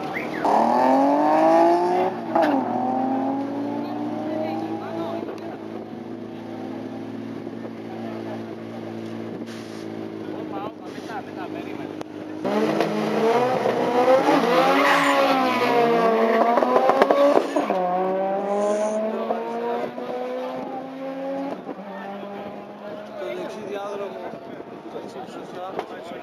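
Drag-racing car engines at full throttle. A car accelerates hard down the strip, its pitch climbing and dropping at a gear change, then fades. A second car revs repeatedly at the start line, then launches, its engine climbing in pitch through the gears.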